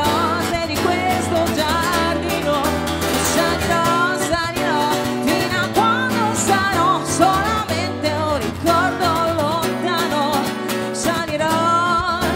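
Woman singing a pop song into a microphone, accompanied by a steadily strummed steel-string acoustic guitar fitted with phosphor bronze strings.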